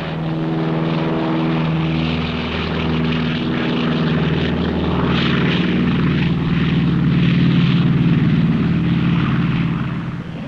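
Radial piston engines of a twin-engine propeller airliner running at takeoff power as it lifts off: a steady, loud drone that swells a little louder late on and falls away at the very end.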